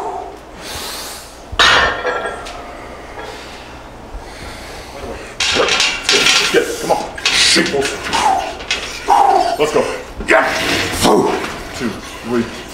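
A lifter straining through heavy lat pulldown reps on a chain-driven machine: loud grunts, shouts and hard breaths, mostly in the second half, over clinks of metal from the machine.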